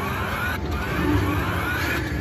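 Video slot machine playing its rising anticipation tone while the last reels spin with a possible bonus trigger showing: a short upward sweep, then a longer one climbing for about a second and a half, over steady casino hum.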